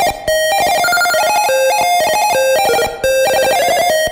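1-bit PC-speaker chiptune, slowed down and with reverb added: a fast single-line melody of square-wave beeps that jumps from note to note several times a second.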